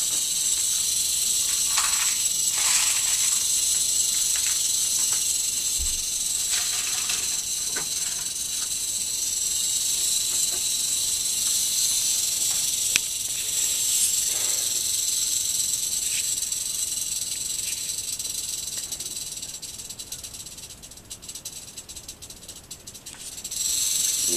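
Eastern diamondback rattlesnake rattling its tail, a continuous high buzz that is its warning display. The buzz fades for a few seconds near the end, then picks up again, with a few light handling knocks.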